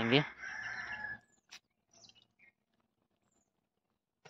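A chicken calls briefly just under a second in, followed by near silence with a few faint small sounds.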